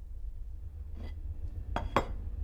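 Dishes clinking: three short clinks of a plate being handled, the last and loudest near the end, over a low steady hum.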